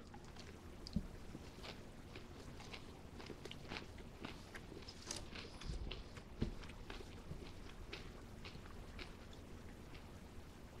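A person chewing a bite of crisp-breaded boneless chicken thigh close to the microphone: a run of small, faint crunches, with a sharper click about a second in and a busier stretch a little past the middle.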